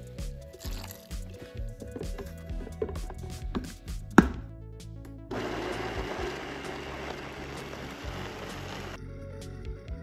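A sharp knock about four seconds in, then a Vitamix blender running for about four seconds, blending spinach, fruit and oat milk into a smoothie, and stopping abruptly near the end.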